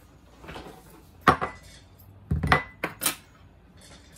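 A jar, a ceramic ramekin and a metal fork set down one after another on a desk: a run of knocks and clinks, the sharpest a little over a second in and a cluster of them about halfway through.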